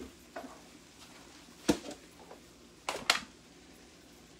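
Kitchen things being handled at the stove, a plastic food container and utensils: one sharp knock a little under two seconds in, then two quick knocks about three seconds in, with faint clicks between.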